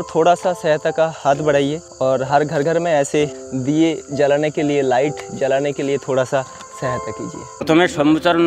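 People talking over a steady, high-pitched chorus of crickets; the cricket sound cuts off suddenly near the end.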